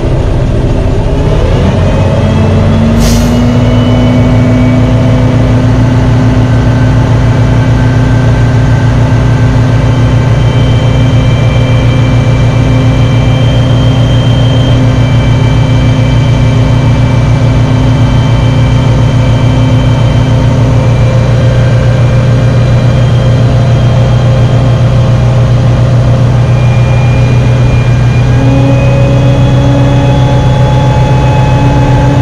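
Semi truck's diesel engine revving up and then held at a steady raised speed to drive the hydraulic pump as the end-dump trailer's bed lifts. There is a short, sharp burst of air about three seconds in.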